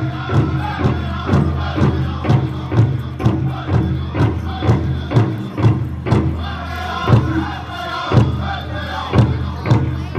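Powwow drum group singing a fancy shawl dance song, struck together on the big drum in a steady beat of about two strokes a second, with high-pitched voices carrying the melody.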